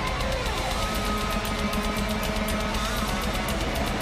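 Blackened death metal played live and loud: heavily distorted electric guitars over fast, driving percussion. A pitch slides down early on, then a high note is held through the middle.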